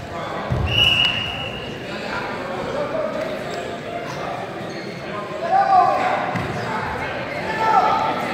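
Indistinct voices echoing in a gymnasium during a wrestling bout, with scattered thuds and a short high squeak about a second in.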